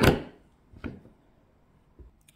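Handling knocks on a handheld radio: a sharp knock at the start and a fainter tap just under a second in.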